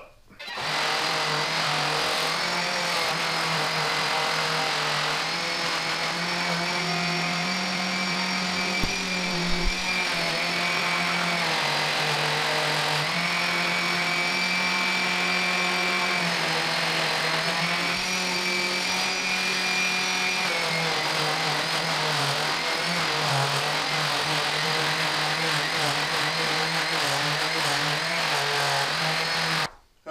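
Electric random orbital sander running steadily on the table's epoxy river, wet-sanding the cured epoxy with fine-grit wet/dry paper. Its motor pitch shifts slightly now and then.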